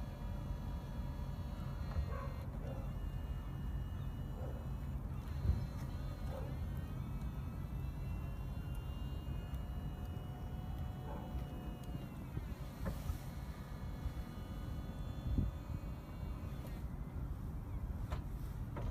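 Audi A4 Cabriolet electro-hydraulic soft-top mechanism folding the roof open: a steady pump whine whose pitch shifts partway through, with a few short clunks as the roof sections and tonneau lid move.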